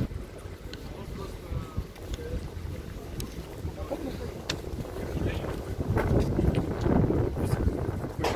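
Street ambience with wind rumbling on the microphone and a few short clicks, then passers-by talking close by over the last couple of seconds.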